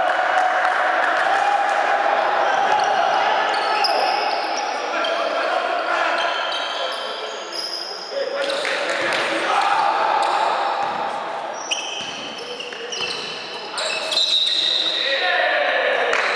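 Basketball play in a gymnasium: the ball bouncing on the court among players' calls and short high squeaks of sneakers, echoing in the large hall.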